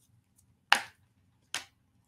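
Two sharp slaps of tarot cards being turned over and laid down on a desk: a loud one about two-thirds of a second in and a softer one about a second later.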